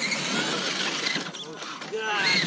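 Scale RC rock crawler's drivetrain whirring and grinding as the truck climbs a muddy trail toward the microphone.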